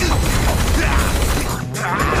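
Animated fight-scene soundtrack: background music under a dense, noisy mix of action sound effects, with a short dip in level near the end.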